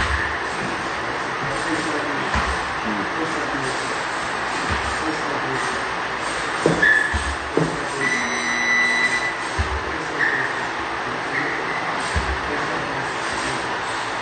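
Steady, dense background noise with indistinct voices and a few dull low thumps spread through it.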